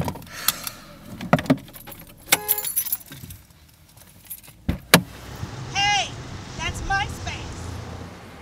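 Car keys jangling and clicking as they are handled inside a car, with a short pitched tone about two and a half seconds in and two sharp clicks about five seconds in. A few short rising-and-falling calls follow near the end.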